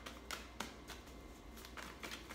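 Tarot cards being shuffled by hand: a few soft, scattered card clicks and flicks.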